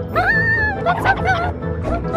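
High-pitched whimpering of a frightened cartoon girl character: a rising whine held about half a second, then shorter whimpers, over background music.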